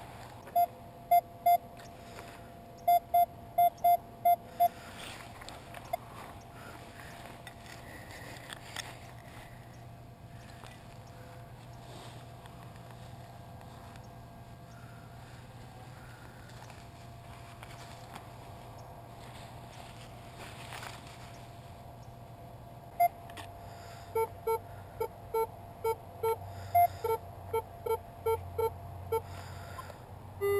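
Metal detector sounding short beeping target tones: a few quick beeps at one pitch in the first seconds, then a rapid run of beeps at a lower pitch near the end as the coil is swept over the ground. In between, faint scraping and rustling of rubber mulch being dug with a hand trowel.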